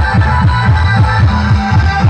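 Loud dance music played through a truck-mounted DJ sound system with horn loudspeakers, driven by a heavy, fast bass beat.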